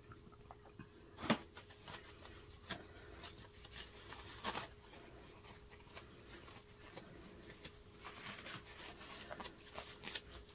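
Quiet tabletop handling: a light knock about a second in and a few softer taps, then a paper towel crinkling as a metal wax-melting spoon is wiped clean.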